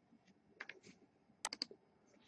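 A few faint computer keyboard keystrokes: two about half a second in, then three in quick succession around a second and a half.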